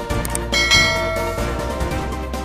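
Background music with a bell-like ding sound effect that starts about half a second in and rings for about a second. Two quick clicks come just before it.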